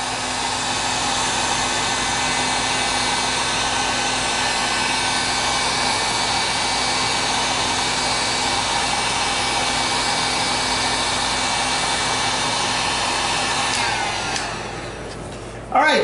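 Handheld heat gun running with a steady blowing whir, shrinking heat-shrink tubing over a swaged wire-rope cable end. Near the end it winds down, its pitch falling as the fan slows.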